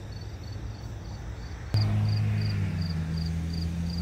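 Crickets chirping steadily, about three chirps a second. Just under two seconds in, a click and then a loud steady low hum begins abruptly and keeps going.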